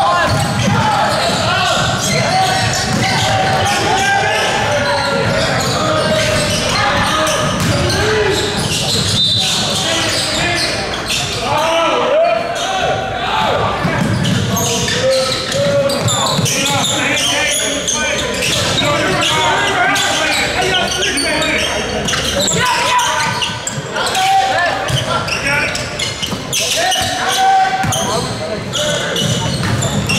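Basketball game sounds in a gym: a basketball bouncing repeatedly on the hardwood court, with players and spectators calling out, echoing in the large hall.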